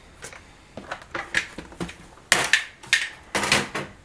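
Craft supplies being handled on a tabletop: a plastic scoring board and cardstock are moved and set down, giving a scattered series of light knocks and taps that grow louder and more frequent about halfway through.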